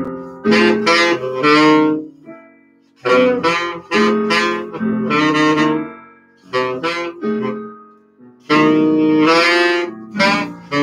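Saxophone playing a bluesy jazz melody in phrases of a second or two with short pauses between them, over piano accompaniment.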